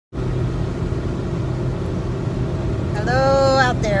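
Steady low rumble of a car's engine and tyres heard inside the cabin while driving. A woman's drawn-out greeting comes in near the end.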